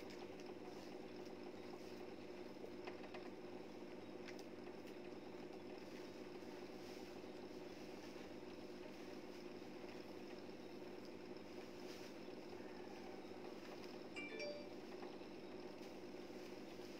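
Faint steady mechanical hum in a small room, with a few light clicks and a short clink about fourteen seconds in.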